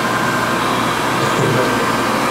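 Wall-mounted electric warm-air hand dryer running, a loud steady blowing noise.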